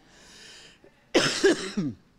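A man coughs into a handheld microphone about a second in, a short burst of a few hacks, after a faint breath in.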